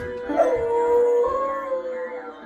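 A beagle howling one long held note, stepping slightly up in pitch about halfway through, while pressing the keys of an upright piano with its front paws; a few piano notes sound under the howl near the start.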